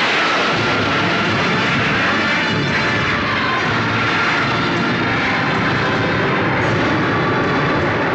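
Loud, steady rushing noise of aircraft engines, like a fly-past, over faint orchestral music.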